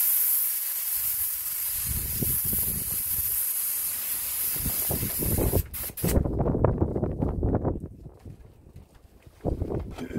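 Iwata airbrush spraying paint in a steady hiss for about six seconds, then cutting off. A low rumbling noise follows after it stops.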